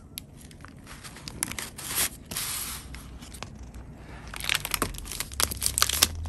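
Paper rustling and crinkling as the pages and paper inserts of a handmade junk journal are turned and handled. There are a couple of soft swishes about two seconds in, then a busier run of crackles in the last second and a half.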